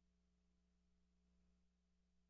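Near silence, with only a faint, steady low hum.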